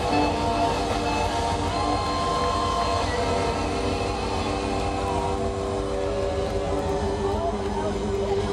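Rock band playing live, recorded from the audience. Long held electric guitar notes ring over a steady wash of band sound.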